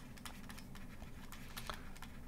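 Faint irregular tapping and scratching of a pen stylus on a tablet while words are handwritten, over a low steady hum.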